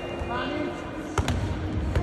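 A football being struck during a teqball rally: two sharp ball impacts in quick succession about a second in, and another near the end, as the ball is played off the players' bodies and the curved table.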